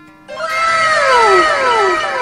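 A loud pitched cry that falls in pitch, starting a moment in and repeating as overlapping, fading echoes about twice a second, over background music.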